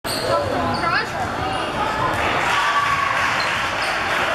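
Basketballs bouncing on a sports-hall floor amid a steady hubbub of overlapping voices and calls, echoing in the large indoor hall.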